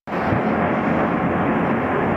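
Loud, steady rush of storm wind during a tornado, cutting in suddenly.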